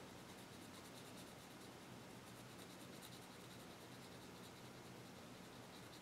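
Very faint scratching of a colored pencil shading on paper in light, repeated strokes.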